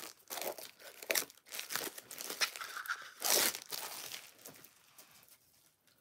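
Packaging crinkling and tearing as a small item is unwrapped, in irregular rustles with a louder rip about three seconds in, then quieter handling near the end.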